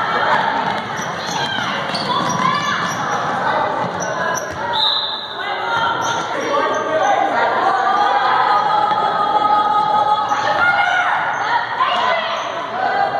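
A basketball dribbled on a hardwood gym court, with players' and spectators' shouts echoing in a large gymnasium.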